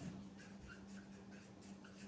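Marker pen writing on a whiteboard: a string of faint, short strokes as words are written, over a faint steady hum.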